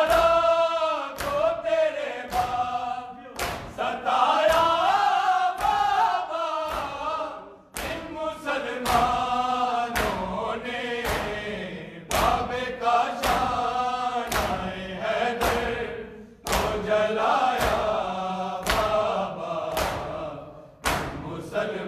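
Men chanting an Urdu noha (lament) together, with the sharp slaps of open hands beating on bare chests (matam) keeping a steady beat under the voices.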